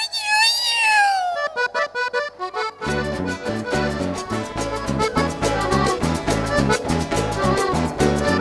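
Accordion playing a solo introduction with sliding notes, then about three seconds in the full band comes in with bass and a steady dance beat.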